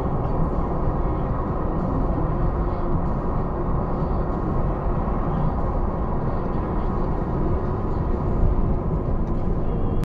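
Car driving at road speed, heard from inside the cabin: a steady low rumble of tyres on asphalt and engine.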